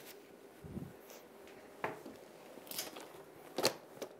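Faint handling noises in a quiet room: a soft thump about a second in, then a few short, light clicks and rustles as the bag is touched.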